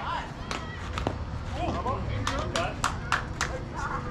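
Hand claps, a few scattered and then a quick run of about three a second, over distant voices calling out.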